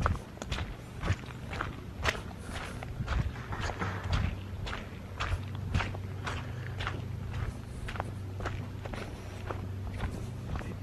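Footsteps walking at about two steps a second on a damp dirt path with patches of snow, over a steady low hum.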